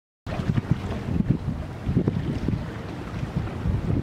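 Wind buffeting the microphone in low, gusty rumbles over seawater sloshing among the granite blocks of a breakwater. The sound starts abruptly about a quarter second in.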